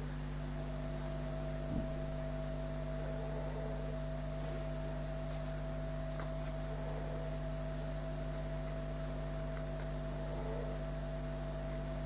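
Steady electrical hum over faint room noise, with a single faint tick about two seconds in.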